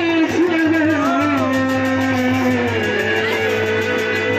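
A folk song sung into a microphone over a loudspeaker, the melody bending and then settling into long held notes, with instrumental accompaniment and a steady low hum underneath.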